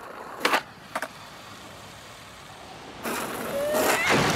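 Cartoon sound effects: two short sharp knocks about half a second apart, then a rushing noise that swells near the end with a faint rising whistle.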